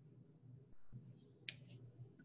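Near silence: faint room tone over a call microphone, with one short, sharp click about one and a half seconds in.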